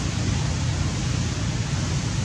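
Steady rushing noise, heaviest in a low rumble, with no distinct events.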